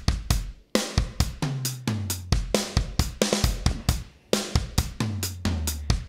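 Sampled rock drum kit from the Addictive Drums 2 Black Velvet kit, 'Crisp With Plate' preset, playing a groove of kick, snare, hi-hat and cymbal hits.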